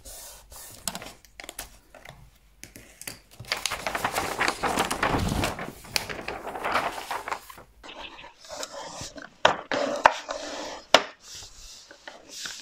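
Large sheets of bookbinding paper rustling and sliding as they are lifted, turned over and handled, with a longer, louder rustle in the middle and a few sharp taps near the end as the paper is laid down and smoothed.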